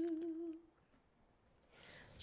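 A woman's voice holding the last note of the sung phrase 'worship you', steady with a slight vibrato, fading out under a second in.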